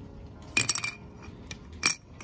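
Small sharp clicks and clinks of a grip screw, wooden grip panel and multitool being handled against a metal 1911 pistol frame: a quick cluster about half a second in, then two single clicks near the end.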